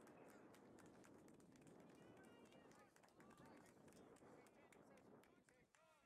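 Near silence: faint outdoor field ambience with distant, indistinct voices.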